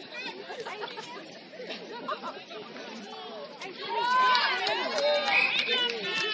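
Several voices calling and chattering across the netball court, with louder, high-pitched shouts starting about four seconds in.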